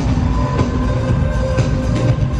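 Live pop concert music over an arena's sound system, heard from the stands, with heavy bass under steady held notes.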